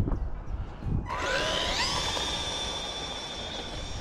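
Brushed electric motor of a Tamiya M05 RC car whining as it accelerates: the pitch rises from about a second in, then holds steady at full throttle. The owner suspects something in the drive is slipping, holding it to about 34 mph.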